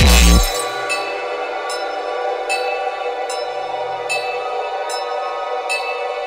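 Speedcore electronic music: the loud, bass-heavy drum beat cuts off abruptly just under half a second in. It leaves a sustained synth drone with a short, high metallic tick about every 0.8 seconds.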